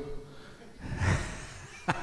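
A man's breath into a vocal microphone about a second in, then the first short huffs of a chuckle near the end, with the room quiet between them.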